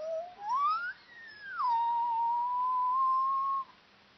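A whistle. It rises steeply, then swoops down, then holds one long steady note that cuts off shortly before the end.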